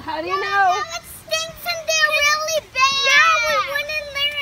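Young children's high-pitched voices, drawn out and sing-song rather than clear words, two at once at the start, then one long wavering voice to near the end.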